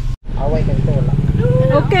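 A vehicle engine idling, a steady low, evenly pulsing hum, with voices over it. The sound cuts out completely for a moment just after the start.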